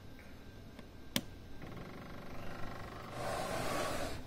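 The rocker power switch on a Mini Air AM-1 air cushion machine clicks on about a second in, and the machine's blower motor starts up with a steady hum. Near the end a louder rushing noise comes in.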